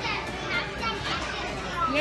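Busy restaurant din: many overlapping voices, including children's chatter, with no single voice standing out.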